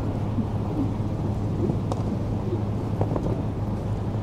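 Steady low outdoor rumble with a constant low hum, and a few faint short knocks about two and three seconds in.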